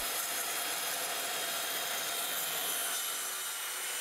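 Bosch handheld circular saw cutting along an 18 mm plywood board, a steady hiss of the blade through the wood.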